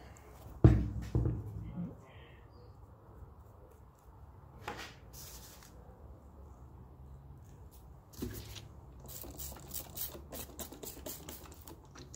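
Handling sounds from coating a foam model-railway load with sawdust: a sharp knock a little under a second in, a second knock soon after, then a quiet stretch. In the last few seconds come quick light taps and rustles as loose sawdust is sprinkled and tapped off over newspaper.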